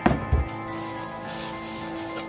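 Background music plays throughout. A cardboard shoebox lid knocks and thumps open in the first half-second, then tissue paper rustles as it is peeled back from the shoes.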